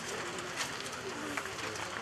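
A dove cooing faintly in the middle, over the steady background hush of an outdoor gathering.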